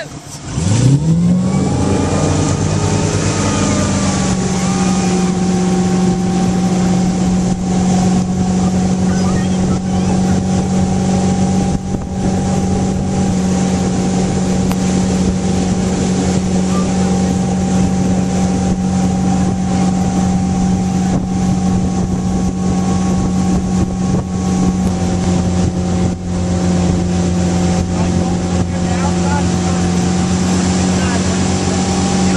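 Motorboat engine opened up to pull a water skier out of the water, its pitch climbing quickly in the first two seconds. It then runs steadily at towing speed over the rush of water, easing slightly near the end.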